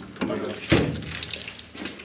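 A single sharp metal clunk about two-thirds of a second in as a stuck hydraulic fitting on the sprayer's oil cooler line comes free.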